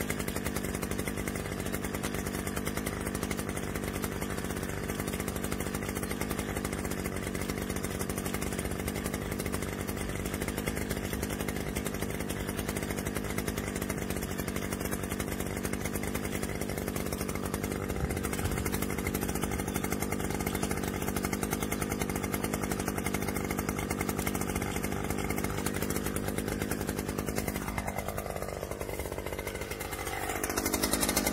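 A Stihl brush cutter's small two-stroke engine idling steadily, then revving up with a quick rising whine near the end.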